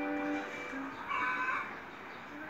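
A young girl singing unaccompanied, a long held note ending about half a second in. A short high-pitched call follows about a second in.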